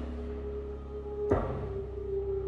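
Slow dark jazz played live by a band: deep bass and a long held note, with a single drum-and-cymbal stroke about a second and a half in, part of a very slow beat.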